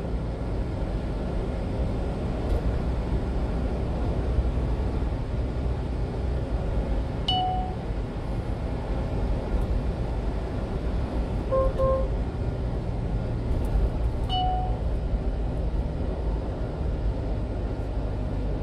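Steady low engine and road rumble inside a moving 1-ton refrigerated box truck's cab. Short electronic navigation beeps cut through: one about seven seconds in, a quick double beep about twelve seconds in, and another about fourteen seconds in, the alert for an upcoming signal and speed enforcement camera.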